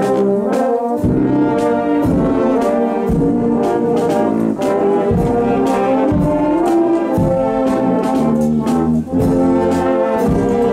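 A marching brass band playing a march, with sousaphone bass under the brass chords and a steady beat about twice a second.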